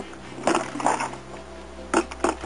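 Compost being dumped from a plastic bucket into a plastic barrel: two short, soft rushes of falling material in the first second, then a sharp knock near the end.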